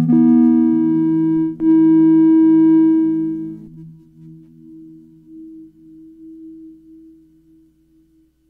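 Ciat Lonbarde Sidrax and Cocoquantus analog synthesizer sounding rich organ-like tones, played by touching the plates. Two notes start with a click, one at the start and one about a second and a half in, and hold to about three and a half seconds. Then a single fainter, wavering tone lingers and fades out near the end.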